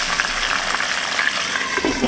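Oil sizzling steadily as red chilies, tomatoes, shallots and shrimp paste fry in a wok-style pan, with a few light scrapes and taps of a spatula.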